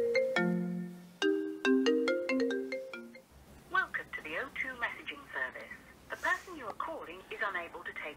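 Mobile phone ringing with a marimba-style ringtone, a quick melody of short mallet notes that stops about three seconds in. Then a recorded voicemail greeting plays, a voice heard thin and narrow through the phone line.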